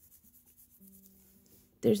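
Faint rustling and rubbing of a knit sweater sleeve being handled, over a faint steady low hum. A woman starts speaking near the end.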